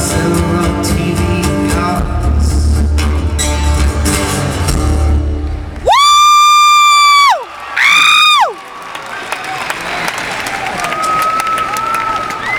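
A live rock band plays the final bars of a song and stops about six seconds in. A fan right by the microphone then lets out two loud, high, held whoops, the first about a second and a half long and the second shorter. The crowd cheers, with fainter whoops further off.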